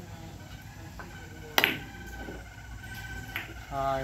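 Carom billiard shot: a couple of faint taps, then one sharp, loud click of balls striking about a second and a half in, followed by lighter clicks as the balls keep running. A voice starts just before the end.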